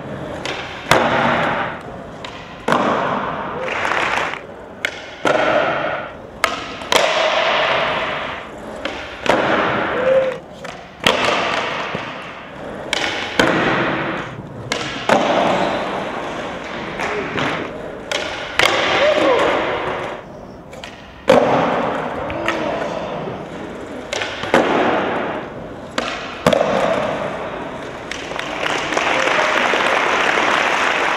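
Skateboards doing flatground tricks on smooth concrete: repeated sharp tail pops and board slaps on landing, a sudden hit every second or two, with wheels rolling on the concrete between them. Some of the tricks are missed and the board clatters away onto the floor.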